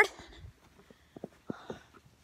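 A few faint clicks and knocks, mostly in the second half, over a low quiet background: handling noise from a phone held in the hand.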